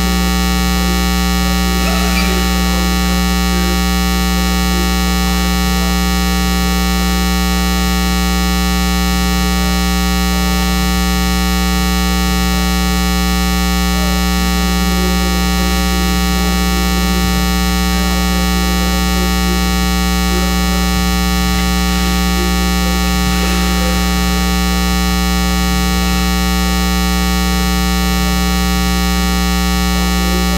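A loud, steady electrical buzz, like mains hum on a sound system's feed, holding unchanged throughout, with many overtones.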